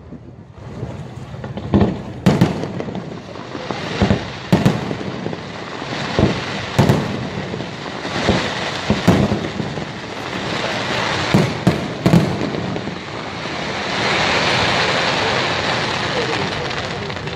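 Aerial firework shells bursting overhead: about a dozen sharp booms, some in quick succession, over a continuous rumble. Near the end the booms stop and give way to a steady hiss.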